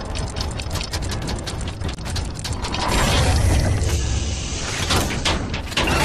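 Mechanical sound effects for an animated gear logo: quick ratcheting clicks of turning gears, swelling into a louder low rumble about halfway through, with a couple of heavy clanks near the end.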